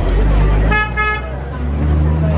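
Double-decker omnibus running with a steady low engine rumble, its horn giving two short toots about a second in.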